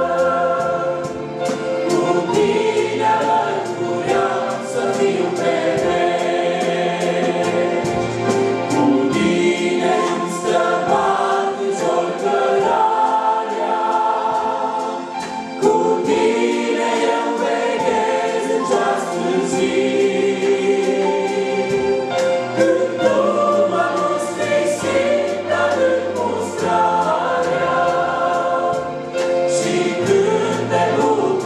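A church congregation and choir singing a Romanian hymn together, many voices in unison.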